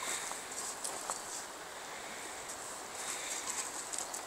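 Steady outdoor riverside ambience: a shallow river running over stones, a constant high hiss, with scattered short, sharp ticks on top.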